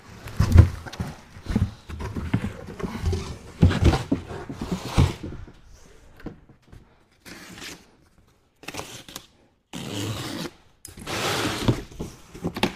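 Cardboard wheel box being cut and torn open: a run of scraping, tearing packaging sounds with knocks of handling, broken by a few short pauses past the middle.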